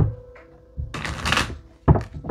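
A deck of cards being handled and shuffled. There is a sharp tap at the start, a rush of card noise lasting under a second in the middle, and another knock near the end.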